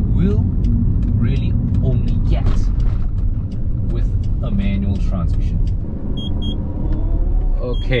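Steady low rumble of an Alfa Romeo 156's engine and road noise inside the cabin as the car is driven, with a few short paired high beeps near the end.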